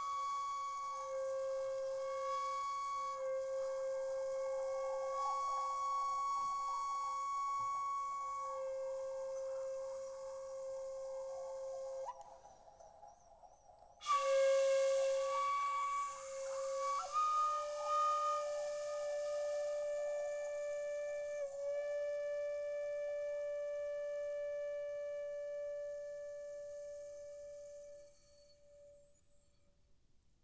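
A Japanese bamboo transverse flute plays long held notes with breath noise, shifting pitch slightly between them. It breaks off briefly about twelve seconds in, then plays a final long note that fades out near the end.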